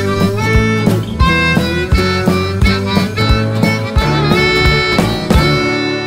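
Small live band playing, led by a harmonica melody with bent notes over acoustic guitar and regular drum strokes. The tune ends with a final hit about five seconds in, and the last chord rings out and fades.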